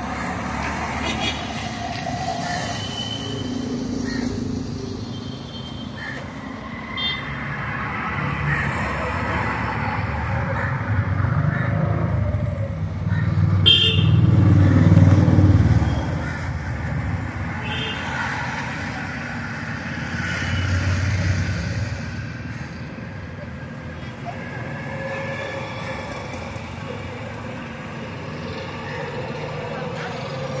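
Road traffic running on, with a vehicle passing loudly about halfway through and a few short horn toots. Indistinct voices can be heard in the background.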